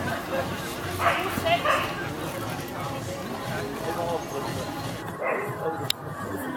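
A dog barking in short bursts, a few times about a second in and again near the end, over the murmur of onlookers.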